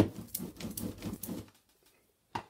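Rubber brayer rolled over a freshly glued paper image on card, pressing it flat: a rapid, irregular crackly patter that stops about a second and a half in.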